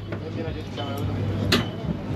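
A parasailing boat's engine running as a steady low hum under faint voices, with one sharp click about one and a half seconds in.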